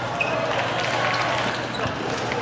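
Table tennis rally in a doubles match: the celluloid ball clicking off the rubber paddles and the table a few times, over the chatter and echo of a large hall.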